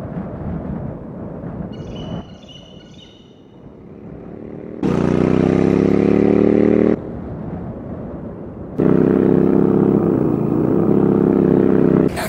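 Motorcycle engine revving in two loud stretches over wind noise. The first, about five seconds in, climbs slightly in pitch. The second, about nine seconds in, holds steadier with a brief dip. Each starts and cuts off abruptly.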